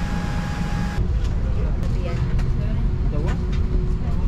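Steady low noise of a Boeing 787 Dreamliner's passenger cabin, the air-conditioning and ventilation running, with faint passenger voices and a few light clicks.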